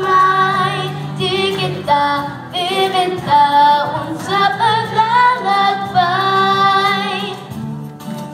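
A female singer singing a pop ballad into a microphone over instrumental accompaniment, with long held notes and vibrato.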